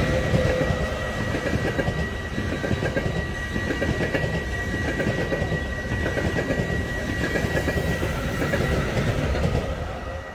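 Electric intercity passenger train passing close by: a steady rumble of wheels on rails with clickety-clack over the rail joints and a constant high whine, easing off near the end as it recedes.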